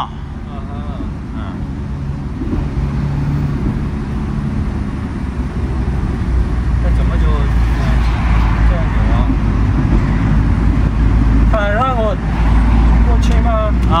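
Van cabin on the highway: engine and road noise as a steady rumble, which grows into a louder, deep drone about halfway through.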